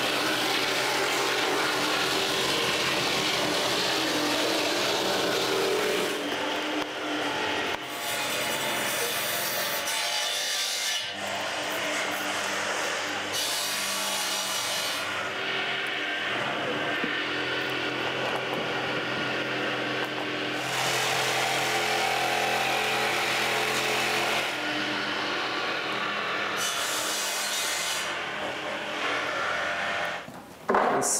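Jigsaw cutting continuously through a pressed ski blank (top sheet, core and base), sawing out the ski's outline. The saw runs without a break, and its loudness and brightness shift every few seconds as the cut goes on.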